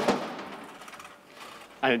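Mechanism of a homemade chain-reaction contraption clattering briefly on a test run, sharp at first and dying away over about a second. The mechanism fails to complete its task.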